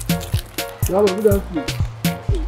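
Background music with a steady drum beat and bass line, with a voice over it briefly around the middle.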